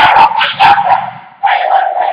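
A woman laughing hard, a high, squealing laugh that breaks off about a second in and then comes back in a shorter burst.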